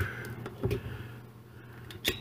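Handheld needle meat tenderizer pressed down into a thick raw ribeye steak, giving faint soft pressing sounds.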